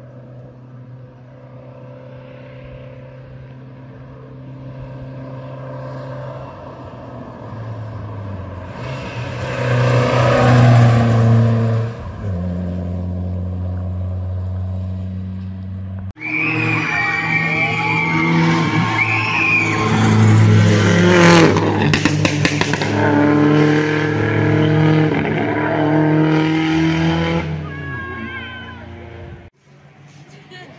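Rally cars at high revs climbing a hill road: one engine builds steadily as it approaches, with a sharp drop in revs partway through. After a sudden cut, a second loud stretch of high-revving engine noise with pitch swinging up and down stops abruptly near the end.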